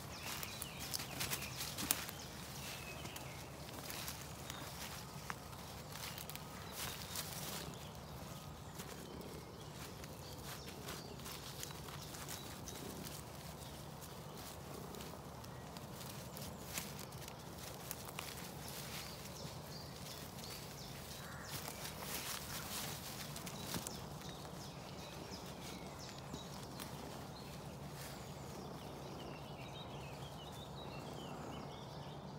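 Footsteps and rustling through dense leafy woodland undergrowth, in irregular clusters of soft crackles and brushing, over a faint steady low hum.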